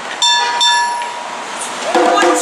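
A bright metallic ring, like a struck bell, sets in suddenly about a quarter-second in and fades away over about a second and a half.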